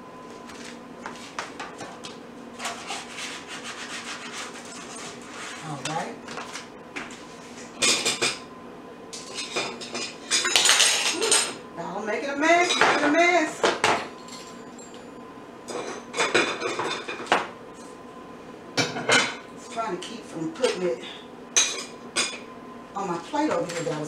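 A metal spatula scraping and knocking against a metal baking pan, working under a tortilla pizza to loosen it from the bottom. A series of short scrapes and clatters, loudest around ten to fourteen seconds in.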